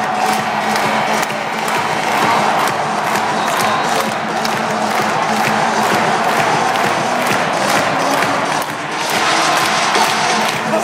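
Large basketball arena crowd cheering and shouting loudly over music with a steady beat.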